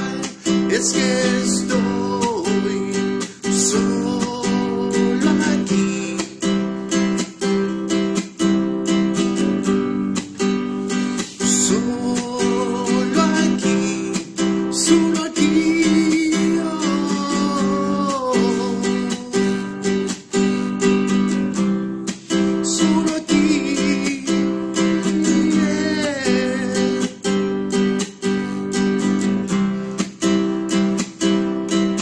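A man singing while strumming an acoustic guitar, a solo acoustic song with a steady strummed rhythm under the voice.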